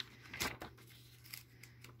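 Glossy catalog pages being flipped by hand: a short papery rustle and flap about half a second in, then faint rustling.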